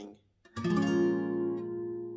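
Acoustic guitar: an A♯ minor 7 barre chord at the sixth fret strummed once about half a second in, then left to ring and slowly fade.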